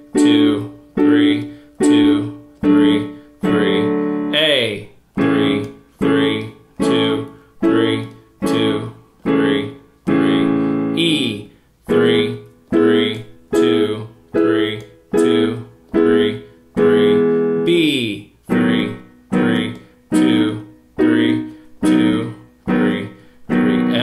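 Yamaha digital piano playing major triads and their inversions with the left hand, one chord a beat at about 144 beats a minute. A longer held chord comes about every six seconds as each new key in the circle of fifths begins, and a voice counts along.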